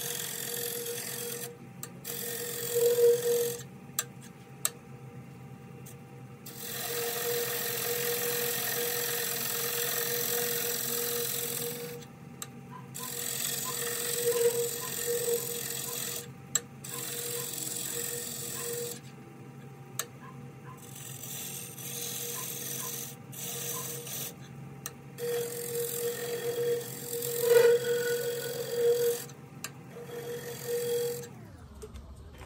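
Wood lathe running with a steady hum while a turning tool cuts a tenon into the base of a spinning California pepper wood blank. The cutting comes and goes in passes several seconds long, a rough scraping with shavings coming off, louder near the end.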